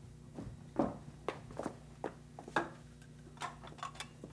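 Footsteps on a hard studio floor, about two a second, over a low steady hum. Near the end come a few quicker clicks as an old candlestick telephone is picked up and the receiver is lifted.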